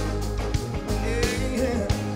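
Live rock band music with singing over a steady drum beat and bass.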